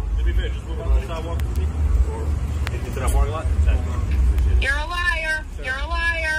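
A steady, loud low rumble of an outdoor street scene with men's voices talking faintly, then a man's voice close by near the end.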